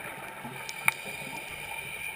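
Underwater ambience: a steady hiss with faint scattered clicks, and one sharp click a little under a second in.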